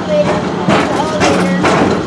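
Indistinct voices talking over the low hum of a moving PeopleMover ride vehicle; the hum comes and goes.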